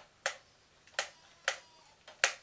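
Three sharp, irregularly spaced clicks, about half a second to three-quarters of a second apart, with quiet between them.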